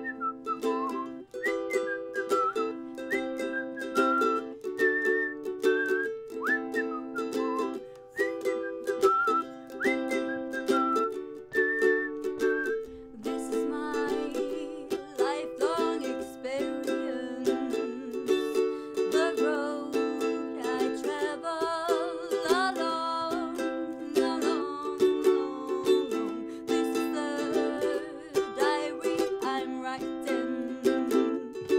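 Ukulele strummed in a reggae-feel rhythm, with a woman whistling the melody over it for roughly the first half. After that she sings the melody instead.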